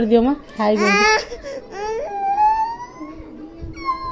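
A toddler fussing and whining: a few short high-pitched cries, then a longer drawn-out whine.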